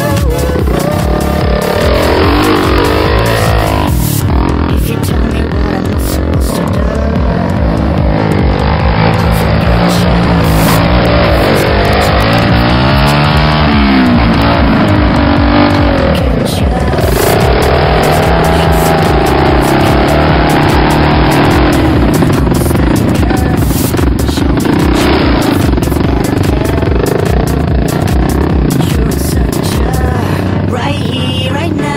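Dirt bike engine revving, its pitch rising and falling several times, then running more steadily through the second half. Electronic dance music with a steady beat plays over it.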